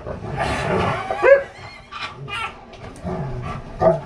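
Two dogs greeting excitedly at close range, with whines and a short yelp about a second in, which is the loudest sound, amid scuffling on a cushioned bed.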